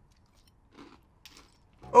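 Near silence broken by a couple of faint, short sounds of people eating cereal from bowls with spoons; a voice starts near the end.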